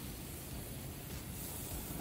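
A steady, faint hiss from a gas grill burning on open flame, with fish fillets sizzling on the grate.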